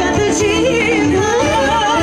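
Albanian folk dance music (valle) played live: a loud, ornamented lead melody that wavers and trills over a steady beat.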